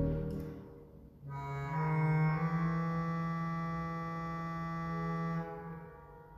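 Organ playing slow, sustained chords. A chord dies away in the church's reverberation in the first second, and after a brief gap a new chord enters and is held for about four seconds before fading near the end.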